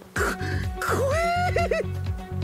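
Anime soundtrack: background music with a low repeating pattern, under a character's voice crying out in Japanese. The cry rises in pitch about a second in, then breaks into a few short stammered syllables, a frightened "S-Scary!".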